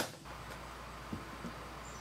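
Hands handling a hard travel case with aluminium-trimmed edges and latches: one sharp click at the very start, then quiet with a low steady hum and a faint tap a little over a second in.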